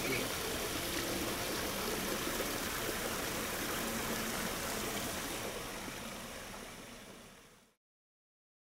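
Steady rush of water from a garden waterfall and water feature, with faint voices in the background, fading out over the last two seconds.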